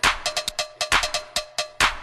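Techno track with drum-machine percussion: a loud sharp hit a little under once a second, quicker ticking hits between them, and a short repeated tone riding over the beat.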